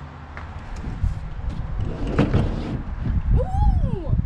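A plastic folding table knocking and scraping against a pickup truck's bed as it is pushed in, with uneven rumbling knocks and the loudest knock about two seconds in.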